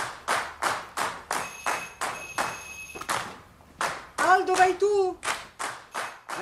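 Film soundtrack: a steady rhythmic beat of claps or hand percussion, about three strokes a second, with a high ringing for over a second near the middle and a voice briefly near the end.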